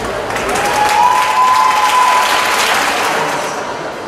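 Audience applauding as a ballroom dance ends, with one held high note over the clapping that rises slightly about a second in and stops about three seconds in.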